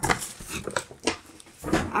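Paper shopping bag rustling and crinkling in irregular bursts as a hand rummages inside it.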